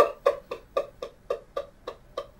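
A person's voice in short, evenly spaced pulses, about four a second, growing fainter and slightly slower.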